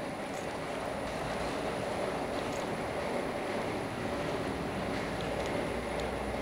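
Steady background noise, an even low hum with no speech and no distinct events.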